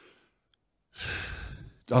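A man's audible breath close into a handheld microphone: a short rush of air lasting just under a second, after a brief silence.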